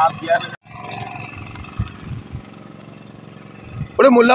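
Boat engine running steadily in the background under a brief voice at the start, with a few faint low knocks in the middle. The sound drops out completely for a moment about half a second in.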